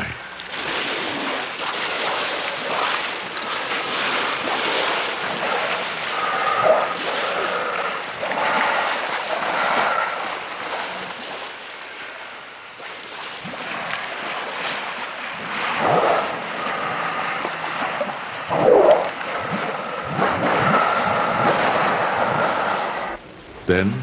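A pod of narwhals crowding a small breathing hole in the ice: churning, splashing water and breaths as they surface, with short high squeals now and then and two rising calls in the second half.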